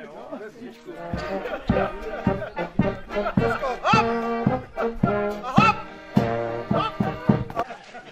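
A small brass band playing a lively tune on trumpet and a brass horn, with a steady bass drum beat. It starts about a second in and stops shortly before the end.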